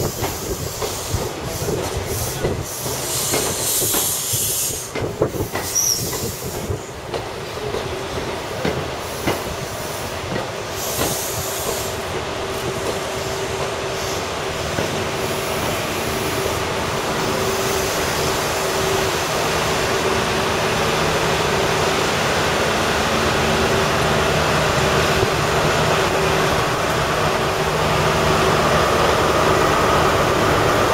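High Speed Train coaches rolling slowly past as the train slows, with intermittent high-pitched squealing and clicks over the rail joints in the first dozen seconds. After that the rear Class 43 diesel power car draws near, and its steady engine hum grows gradually louder toward the end.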